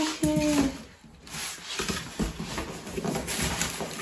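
Foam packing blocks and cardboard being handled while unpacking a boxed microwave: scattered light knocks, taps and rustles. It opens with a short drawn-out vocal 'oh', the loudest sound.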